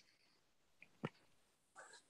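Near silence: room tone, broken by one short click about a second in.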